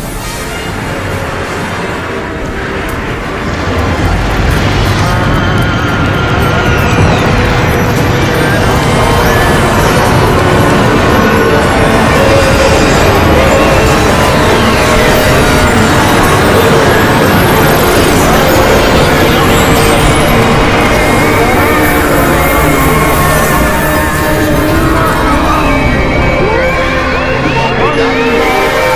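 Many studio logo intros playing at once: their theme music and fanfares overlap in a dense, loud jumble that grows louder about four seconds in.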